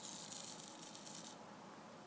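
Small micro servo jittering at its centre position, a faint high-pitched buzzing rattle that cuts off a little over a second in. The owner suspects the servo is being run above its rated voltage from a 6.1 V pack.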